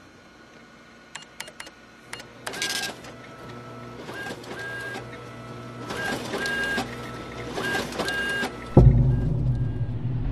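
Large office printer-copier running: a few sharp clicks, then repeated bursts of paper-feed and print mechanism noise with a high whine in each as the sheets come through. About a second before the end a sudden loud, deep rumble sets in.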